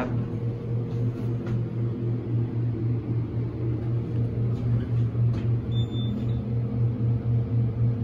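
Hydraulic elevator car travelling down, a steady low hum with a regular throb in loudness. A brief faint high beep sounds about six seconds in.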